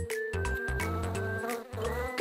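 A fly buzzing over background music.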